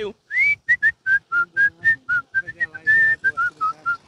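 A man whistling a quick run of about fifteen short, clear notes, the first one sliding upward.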